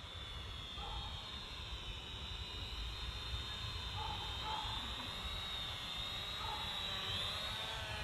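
Syma X500 quadcopter's propellers whining, several close high pitches wavering slightly as the motors correct and rising a little near the end, over a low rumble of wind.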